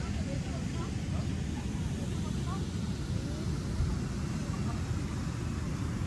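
Steady low outdoor rumble, with faint distant voices of people coming through now and then.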